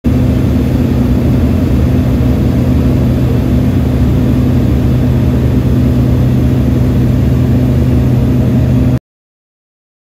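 Steady engine and propeller drone of a small propeller plane heard from inside the cabin in flight, a low hum with a rushing noise over it, cutting off suddenly about nine seconds in.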